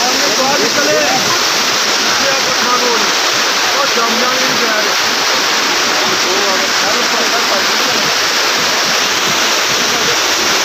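Fast-flowing mountain river rushing over rocks in white-water rapids, a loud steady roar close at hand. Faint voices of people talking can be heard under it.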